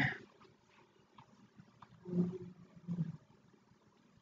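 Two short, low murmurs from a man's voice, about two and three seconds in, against quiet room tone.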